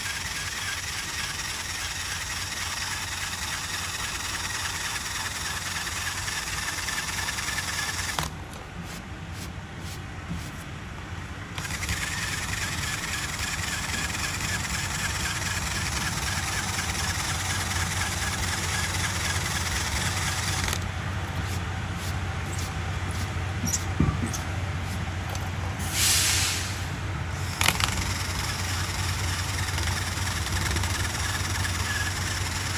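Handheld power tool spinning a rubber eraser wheel against painted fibreglass, rubbing off leftover mask glue. It runs steadily, goes quieter for a few seconds about eight seconds in, and has a short louder hiss and a couple of clicks near the end.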